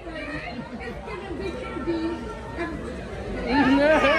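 Several people talking over each other at once, growing louder near the end.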